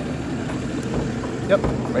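An engine idling steadily, a low even hum.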